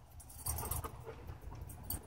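Faint sounds of a chocolate Labrador trotting up to its handler: light paw footfalls with small clinks and jingles from its collar, starting about half a second in.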